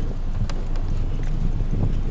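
Footsteps of someone walking on pavement while filming, a few light clicks over a steady low rumble of wind on the microphone.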